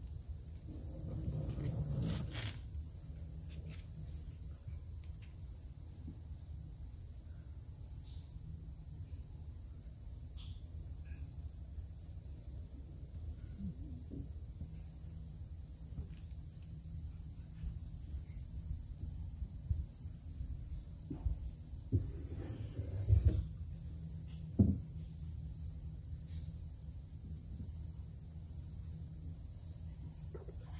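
Steady, high-pitched insect chorus droning without a break, over a low rumble. A few short knocks come in the latter part, the loudest two close together.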